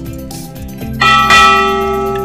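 A bell-like chime strikes once about a second in and rings down slowly, over light background music.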